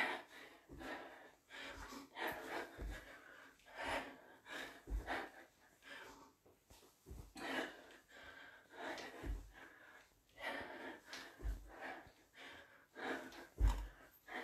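A woman breathing hard and gasping during squat jumps, with a low thump about every two seconds as she lands.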